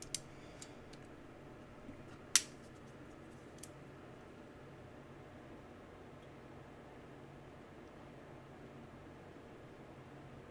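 A few light metallic clicks and taps as a digital caliper's steel jaws are slid and closed onto a knife blade, the loudest about two and a half seconds in, then faint room tone.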